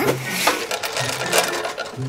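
A fast, continuous rattling clatter: a cartoon sound effect as the magician works the star-covered magic cabinet.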